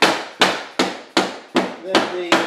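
Rubber mallet knocking laminate flooring planks down to lock them together: a steady run of sharp knocks, about two and a half a second, six in all.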